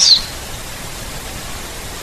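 A pause in speech filled by steady background hiss, after the trailing 's' of the last spoken word at the very start.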